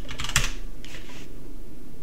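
A few keystrokes on a computer keyboard in the first half second, typing a password into a login prompt, over a faint steady hum.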